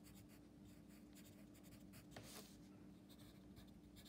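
Wooden pencil writing a word on a paper workbook page: faint, irregular scratching strokes of the lead on paper.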